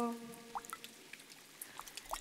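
A held sung note fades out just after the start, leaving near quiet with a few faint, scattered clicks and ticks.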